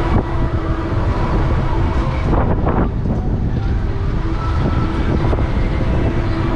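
Wind buffeting the microphone of a camera carried on a spinning chairoplane swing ride: a loud, steady, gusty rush of air as the seat swings out on its chains.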